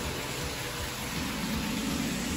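Steady background noise, a hiss with a low rumble under it, with no distinct event.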